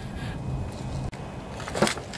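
Flywheel of a Briggs & Stratton lawnmower engine being turned by hand. It starts with a sharp click, then a faint steady low hum, and a short sharp sound comes near the end.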